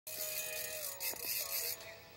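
Ice-fishing spinning reel's drag buzzing as a hooked walleye pulls line, fading out near the end, over a faint steady hum.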